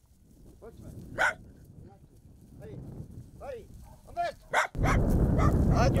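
A dog barking a few times in short, separate barks over a quiet background. From about five seconds in, wind buffets the microphone and a man's voice is heard.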